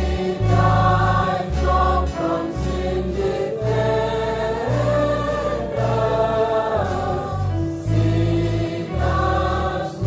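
A choir singing a slow Christian song over a deep bass accompaniment, the voices holding long notes and moving from chord to chord every second or so.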